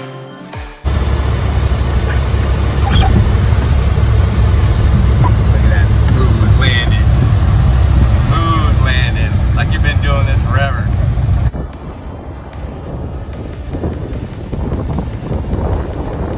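Engine and propeller of a single-engine Piper Archer heard from inside the cockpit: a loud, steady low drone that cuts in suddenly about a second in, after a moment of guitar music. The drone drops away abruptly a few seconds before the end, leaving quieter noise.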